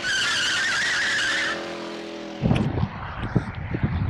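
Car tyres screeching in a sustained squeal for about a second and a half, followed by a short pitched tone that fades. About two and a half seconds in, this gives way to wind buffeting the microphone outdoors.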